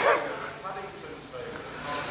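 A faint, distant voice of a congregation member calling out, fainter than the close speech at the microphone.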